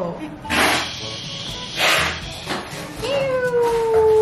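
Two short breathy whooshes, then a long drawn-out 'ooo' voice call that starts about three seconds in and falls slightly in pitch.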